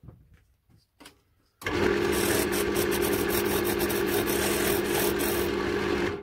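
Wood lathe spinning an oak handle blank while sandpaper is held against it: a steady motor hum under a dense sanding hiss, starting suddenly about one and a half seconds in. A few faint clicks come before it.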